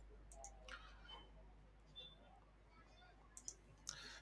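Near silence with a few faint, scattered computer keyboard and mouse clicks over a faint low hum.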